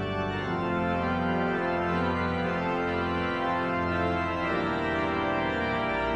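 Pipe organ playing sustained hymn chords, moving to new chords just after the start and again about four and a half seconds in.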